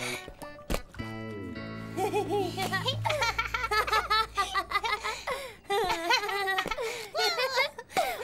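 Light background music, then children giggling and laughing in quick bursts from about two seconds in.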